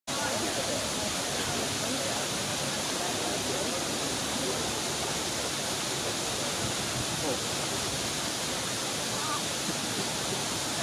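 Small waterfall, water pouring over a mossy stone lip with a steady rushing noise.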